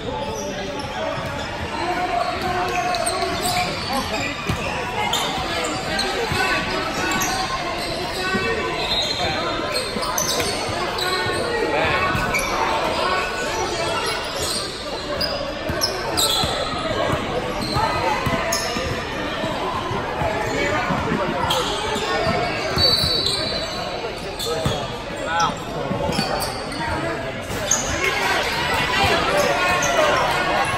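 Basketball bouncing on a hardwood gym floor during play, with players' and onlookers' voices calling out throughout, echoing in the large hall.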